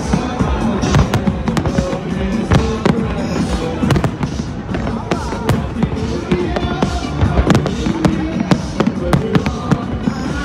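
Aerial fireworks shells bursting in a dense, irregular string of sharp bangs, with music playing underneath.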